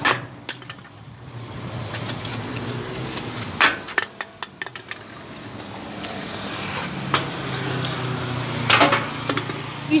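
An empty aluminium drink can thrown against a wall-mounted litter bin hits it with a sharp clank. A few short clatters follow about three and a half to four and a half seconds in, over a steady low hum of street traffic.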